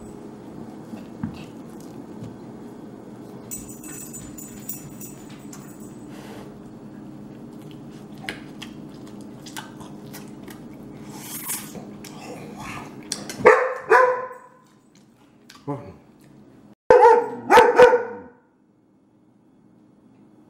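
A young German Shepherd barking: two loud barks, a short pause with a softer sound, then two more barks. Before them there is only a steady low hum with faint scattered clicks.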